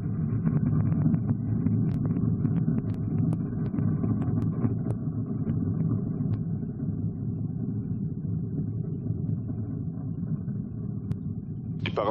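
Ariane 5 rocket in ascent on its two solid rocket boosters and Vulcain main engine: a low, steady rumble with scattered crackles, slowly fading as it climbs away.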